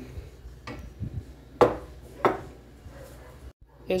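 Kitchen utensil knocking against a glass baking dish while melted chocolate is spread: a few faint taps, then two sharp knocks about two-thirds of a second apart in the middle.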